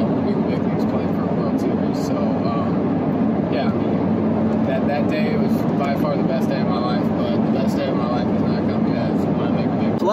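Steady road and engine noise inside a moving car's cabin, with faint speech beneath it.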